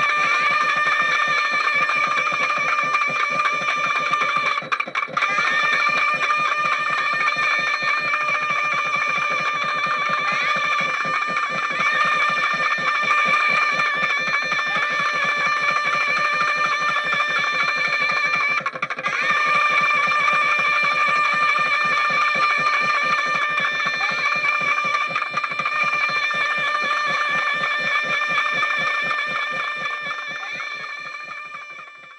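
Temple hand bell rung rapidly and without pause during an arati, its ringing tones held steady. The ringing briefly stops twice, about five seconds in and just before nineteen seconds.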